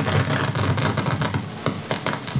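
Crackling noise made up of many small rapid clicks over a steady hiss, with a faint low murmur beneath.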